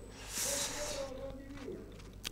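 A short breathy hiss, like a breath or sniff close to the commentary microphone, about half a second in, over a faint low voice-like murmur in the hall.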